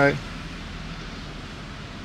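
A motor yacht's engine running steadily underway, heard as an even low hum with a faint regular low pulsing.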